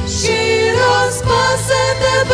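A small group of women singing a Ukrainian worship song in harmony, holding long notes with vibrato.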